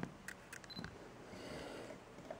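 A few faint sharp clicks in the first second, one with a brief high beep, then a soft rustle of noise.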